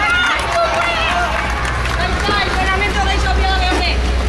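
Children's voices calling out over one another as a group marches, over a steady low rumble.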